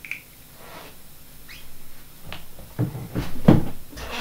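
Bumps, knocks and cloth rustling from a person moving close to the microphone and settling into a chair. The loudest knocks come about three seconds in.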